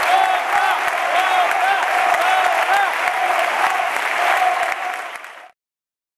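Audience applauding, with many voices calling out over the clapping. The sound dips near the end, then cuts off suddenly.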